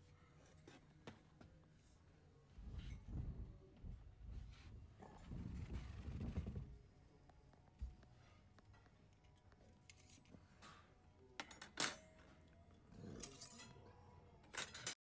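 Faint table-side sound: two spells of low rumbling in the first half, then a few light clicks and taps near the end.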